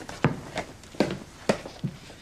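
A basketball bouncing on a floor: four dull thumps, roughly half a second apart.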